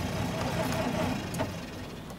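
A small car's engine turning over on the starter without catching, then stopping with a click about a second and a half in; the driver puts the failure down to a faulty alternator.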